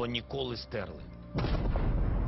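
The end of a spoken line, then about a second and a half in a sudden deep rumble of an explosion, bombardment, that carries on.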